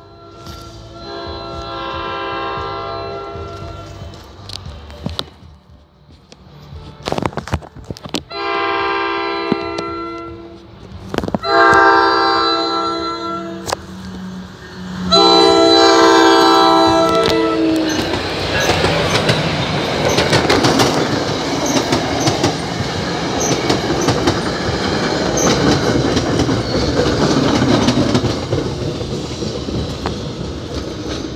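New Jersey Transit commuter train sounding its chime air horn in four blasts as it approaches a grade crossing, the last blast running into the train's arrival. From about halfway through, the train passes close by with a dense rumble and clatter of wheels on the rails.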